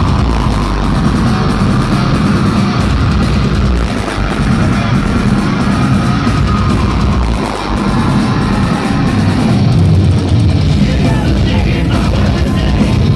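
Heavy metal band playing live at full volume, with distorted guitars and drums, heard through a phone's microphone from the crowd.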